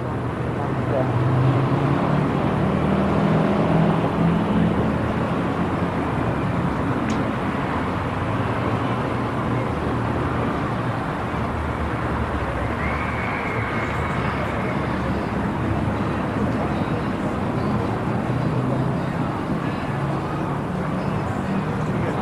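Steady street traffic noise from cars on a busy multi-lane road, with the indistinct chatter of people nearby. A short high squeal comes a little past halfway.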